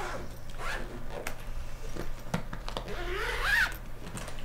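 Zipper on a bag or case pulled shut in several quick strokes, as things are packed to leave. Near the end there is a short, louder squeak that rises in pitch.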